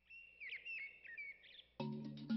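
Forest birds calling: a quick run of short, high chirps and whistles that sweep up and down in pitch. Near the end, music with mallet-struck notes comes in.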